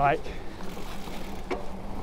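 Electric mountain bike being ridden: a steady rumble of riding noise with a faint steady hum, and a single click about one and a half seconds in.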